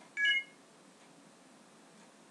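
A short rising electronic chime of two quick notes, the Windows 7 device-connected sound as the computer detects the newly plugged-in iPhone.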